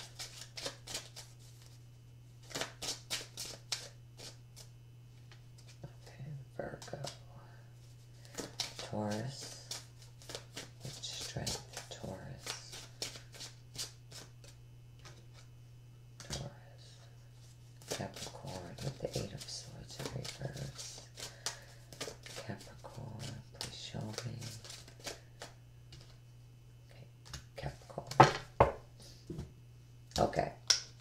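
A deck of Lenormand cards being shuffled by hand in several bouts of quick clicking, with cards then laid down on the table near the end.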